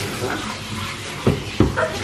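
Handheld shower head spraying water onto a small dog's wet coat in a bathtub, a steady hiss, with two dull knocks about a second and a half in.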